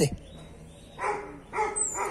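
Small dog whining twice in short calls, each about half a second long, eager to follow its owners who have just left.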